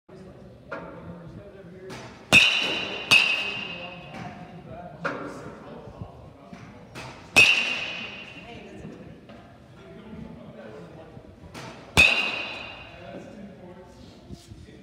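Baseball bat hitting balls in an indoor batting cage: four loud, sharp hits with a ringing ping, two less than a second apart about two and a half seconds in, one near the middle and one near the end. Fainter knocks come in between, with a murmur of voices underneath.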